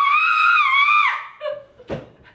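A woman screams a high-pitched 'aah', held steady for about a second: her impression of a Shih Tzu whose bark sounds like a screaming goat. A short sharp click follows near the end.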